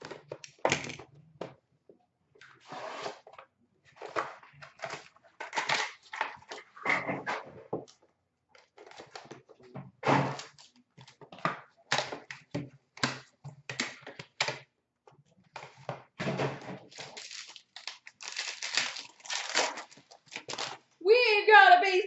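A sealed box of hockey trading cards being torn open and a card pack unwrapped by hand: irregular rustling, crackling and tearing of cardboard and wrapper. A man starts speaking near the end.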